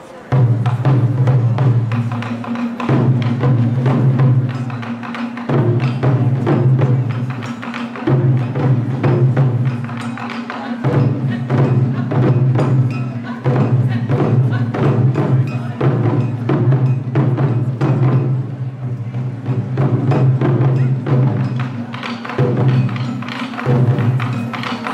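Taiko drumming: several chu-daiko drums on slanted stands struck hard with bachi sticks in a fast, driving rhythm, starting suddenly with a loud hit just after the start. The drums' deep boom rings on between strokes, broken by short pauses every two to three seconds.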